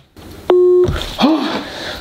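A smartphone gives a short electronic beep, one steady tone lasting about a third of a second, about half a second in. Hiss and a faint voice follow.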